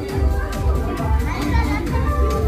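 Children's voices and chatter over loud background music with a steady bass beat.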